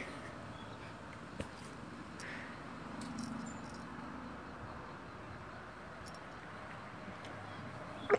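A person chugging carbonated grapefruit water from an aluminium can, the swallowing heard faintly over steady low background noise, with a single sharp click about a second and a half in.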